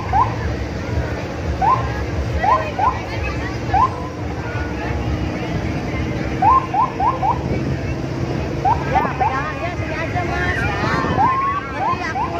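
A vehicle engine running at low speed, mixed with crowd voices. Over it come repeated short, rising chirps, two to four in quick succession.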